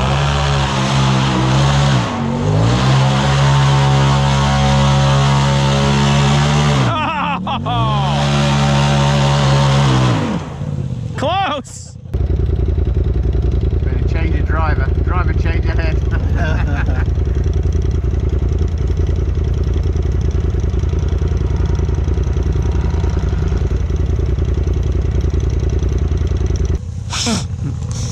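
Side-by-side UTV engine revving hard on a steep dirt hill climb, its pitch rising and dropping several times over about twelve seconds. Then a steady low engine drone heard from inside a UTV cab as it moves slowly along a trail.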